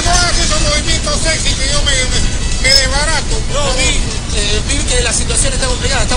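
Indistinct voices talking, with a steady low rumble underneath.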